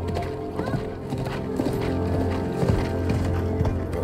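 Horse's hooves clip-clopping at a walk, over a film score of sustained low notes.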